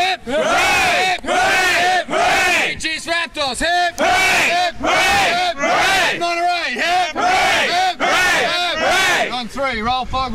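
A group of rugby players' male voices chanting and shouting loudly together, in phrases of roughly a second each with short breaks between them.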